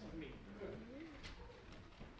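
A faint voice makes a short cooing sound that rises and falls in pitch about a second in, just after the last spoken word.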